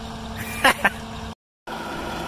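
Large John Deere tractor diesel engine idling with a steady hum, with a short voice sound a little way in and a sudden gap of silence about three quarters through, after which the idle resumes at a slightly different tone.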